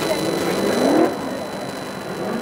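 Voices talking and calling out, loudest about a second in, over a steady background hum of car engines running.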